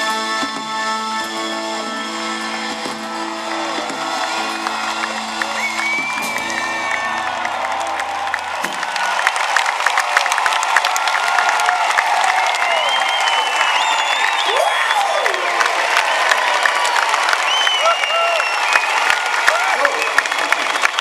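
A live band holds a sustained closing chord that cuts off about nine seconds in. A large concert audience then breaks into loud applause with cheering and whoops.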